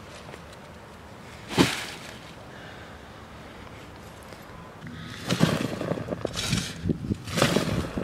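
A single sharp thump about a second and a half in, then a shovel digging into lawn soil: crunchy scraping strokes about once a second over the last three seconds.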